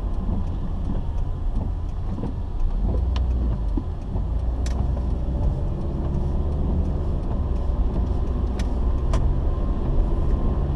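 A car driving on a wet road, heard from inside the cabin: a steady low rumble of engine and road noise. A few sharp clicks or ticks come at irregular moments in the middle and latter part.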